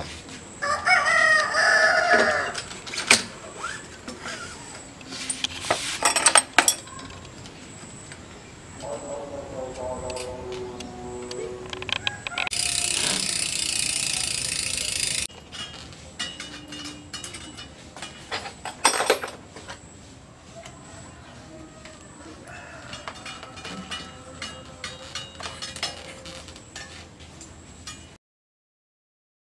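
Hand assembly of a mountain bike: sharp clicks and knocks as the dropper seatpost and brake parts are fitted. A loud animal call about a second in and a lower, falling call around ten seconds in, with about three seconds of steady hiss in the middle.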